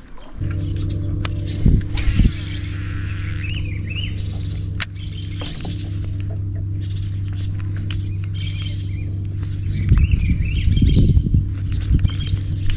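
Electric trolling motor running with a steady hum that starts about half a second in, while birds chirp. A few sharp clicks come during the hum, and low rumbling knocks come near the end.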